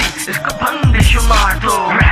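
Hip hop track: a rapped vocal over a deep bass line and a ticking hi-hat beat, the bass dropping out briefly and returning about a second in.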